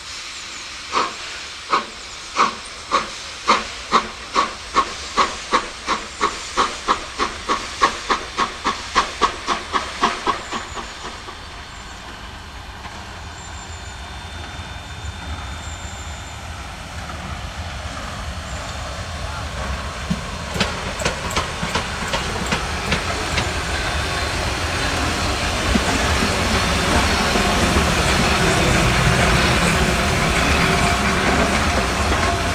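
ČSD class 464.2 steam locomotive working hard from a standstill: sharp exhaust beats that quicken steadily over the first ten seconds, then soften into steady steam hiss and rolling noise. The hiss and rolling grow louder toward the end as the engine comes close.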